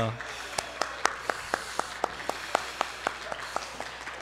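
A congregation applauding lightly: scattered separate hand claps, a few a second, rather than a dense roar.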